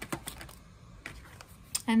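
Oracle cards being shuffled in the hands: a couple of sharp card clicks at the start, then a few fainter ones and soft handling, before a voice begins at the very end.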